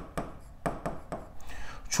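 Stylus tip tapping and scratching on the glass of an interactive touchscreen board while a word is hand-written: a series of short, irregular taps, one for each pen stroke.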